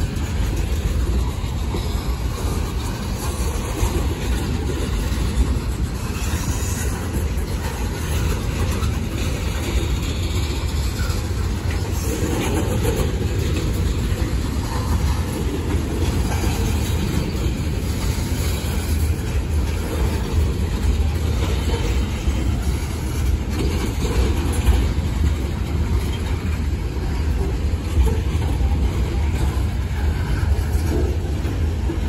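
Freight cars of a long CSX manifest train rolling steadily past close by: a continuous low rumble with wheels clacking over the rail joints and a few louder clanks.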